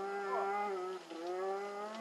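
Distant snowmobile engine running hard up a steep slope: a steady drone whose pitch wavers, dipping briefly about a second in before picking up again.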